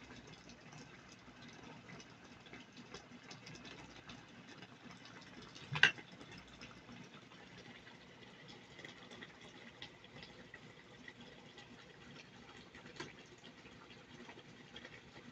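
Faint crackling and bubbling of chicken curry simmering in oily gravy in an aluminium pot. A single sharp knock about six seconds in, and a smaller one near the end.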